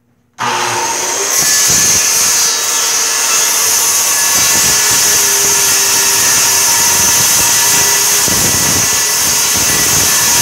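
Corded circular saw switched on about half a second in, coming up to full speed with a high whine, then cutting steadily through a wood sheet from a second or so in.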